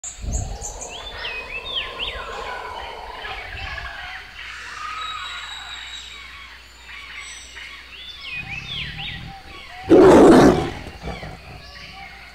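Birds chirping and whistling in a forest ambience, then, about ten seconds in, a big cat's loud roar lasting under a second.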